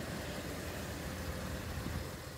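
Steady low rumble with a faint hiss.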